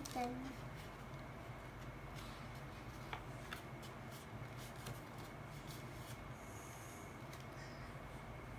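Faint, scattered rustles and light clicks of paper and ribbon being handled as a ribbon is pulled through the punched holes of a paper bag, over a steady low hum.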